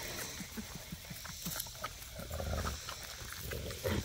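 Faint sounds of dogs and puppies close by, a mother dog with puppies nursing under her, over a steady high buzz of insects. A brief low rumble comes just past the middle.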